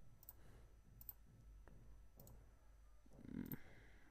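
Faint computer mouse clicks, about four spread over the few seconds, as curves are picked in CAD software, over near-silent room tone. A faint low sound comes shortly before the end.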